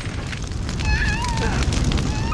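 Steady roar of a building fire with crackling, and a high wavering wail about a second in.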